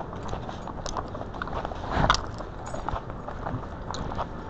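Footsteps on a concrete sidewalk with irregular jingling and rattling from gear carried on the walker's body, picked up close by a body-worn camera. A louder knock comes about two seconds in.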